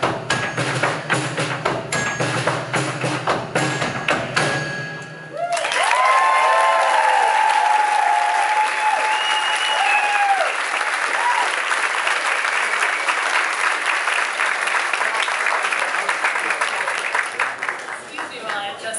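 A live band's music with sharp percussion strokes stops about five seconds in. The audience then applauds and cheers with high whoops, the applause thinning near the end.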